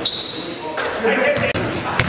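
Basketball game sound in an echoing gymnasium: a ball bouncing on the hardwood court and players' voices, with a short high squeak near the start.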